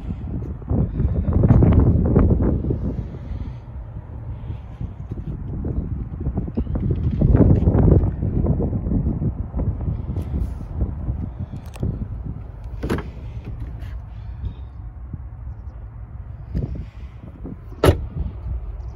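Gusty wind rumbling on the microphone, swelling twice, with a sharp latch click near the end as the car's door is opened.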